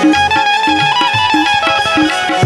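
Instrumental interlude of a Gujarati devotional bhajan: a benjo (keyed Indian banjo) plays a plucked melody over sustained harmonium notes and a steady hand-drum beat from dholak and tabla.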